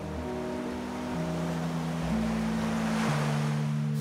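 Ocean surf: a steady wash of breaking waves, swelling slightly, under soft background music of held low notes that change about once a second.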